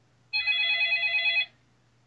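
A telephone ringing for an incoming call: one steady electronic ring, about a second long, that starts about a third of a second in.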